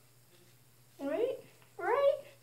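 Two short vocal sounds, each rising in pitch, about a second in and again at the end, the second louder.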